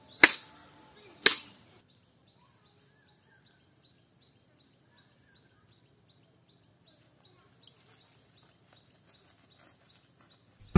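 Two sharp chops of a machete striking bamboo, about a second apart, each with a short ringing tail.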